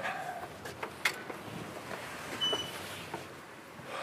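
Footsteps and street background noise, with a few sharp clicks and knocks as a shop door is opened and people go through.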